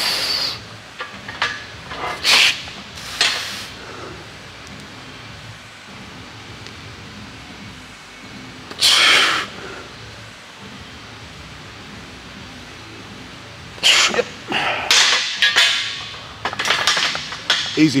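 A powerlifter's sharp, forceful breaths while bracing under a loaded barbell for a squat: a few short breaths in the first few seconds, one big breath about nine seconds in, and a quick run of hard breaths near the end, with quiet between.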